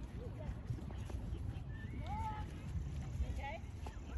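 A horse cantering over grass some way off, its hoofbeats under a low, uneven rumble. A few short, high gliding calls come around the middle and again near the end.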